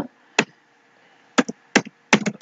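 Computer keyboard keystrokes: a single key press, then a quick run of four presses near the end.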